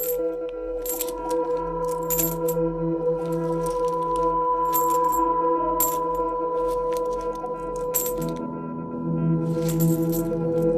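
Repeated short metallic clinks of coins dropping, coming irregularly about once or twice a second, over slow ambient music with long held notes.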